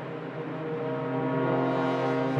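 Symphony orchestra holding a long, sustained low chord, with brass to the fore.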